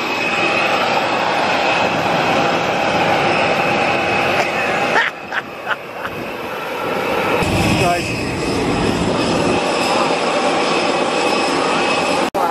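Steady whine of jet aircraft engines running on the apron: a rushing noise with high steady tones over it, dipping briefly twice about five seconds in.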